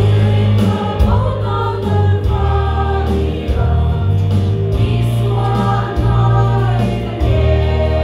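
A women's vocal group singing a Mizo gospel hymn together over a deep, steady bass accompaniment.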